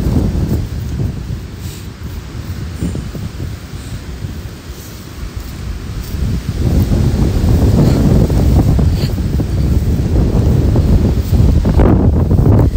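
Wind buffeting a phone's microphone outdoors: a loud, low rumble that eases for a few seconds and picks up again about six seconds in.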